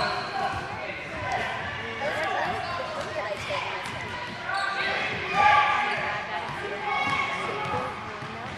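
Children's and spectators' voices chattering and calling out in a large, echoing gym, with a basketball bouncing on the hardwood floor. One voice rises louder about five and a half seconds in.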